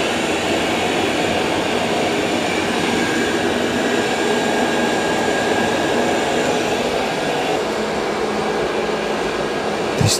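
Two robot vacuum-mops, a Dreame L20 Ultra and a Roborock S8 Pro Ultra, vacuuming and mopping on a tile floor: a steady whir of their suction fans and brushes, with a faint high whine.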